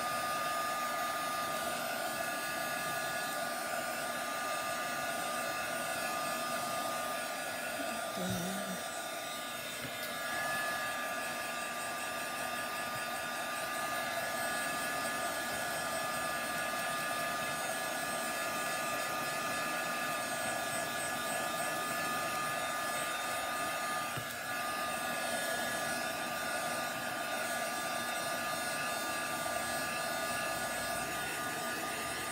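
Handheld electric hot-air dryer running steadily, a blowing rush with a high motor whine, drying freshly applied chalk paste on a glass board.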